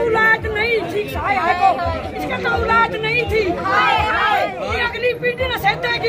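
A group of women's voices wailing together in high, wavering, overlapping lines: a protest mock-mourning lament with cries of 'hai hai'.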